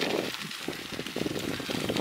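Bicycle tyres rolling over a gravel forest track: a steady rush of grit and small stones with many fine ticks.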